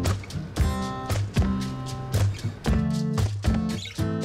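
Background music led by a plucked or strummed guitar, with notes struck at a regular rhythm.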